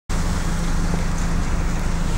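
Steady low rumble and hum of a city bus's engine running, heard from inside the bus.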